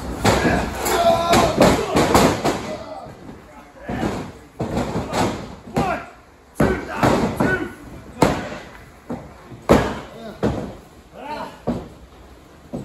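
Wrestlers' bodies hitting the canvas mat of a wrestling ring in a series of sharp thuds and slams, spaced irregularly, with grunting voices between the impacts.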